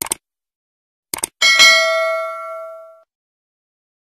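Subscribe-button animation sound effects: a short click, then two quick clicks about a second later, followed by a notification bell ding that rings out and fades over about a second and a half.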